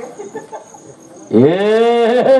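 A performer's loud, drawn-out "Ehh!" yell through the stage microphone. It comes in about a second and a quarter in, rises in pitch and then holds on one note.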